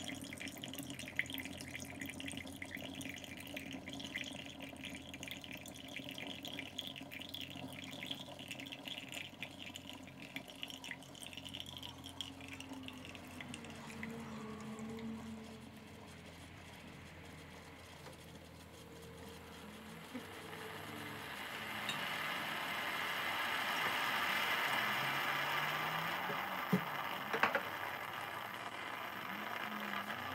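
Mr. Coffee steam espresso maker brewing: coffee trickles from the portafilter into a ceramic mug over a steady low hum. The sound dips about halfway through, then a louder steam hiss and sputtering builds in the second half as the shot finishes.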